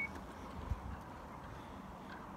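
Power liftgate of a 2017 Dodge Grand Caravan closing under its own motor, a faint steady sound with a light tick less than a second in.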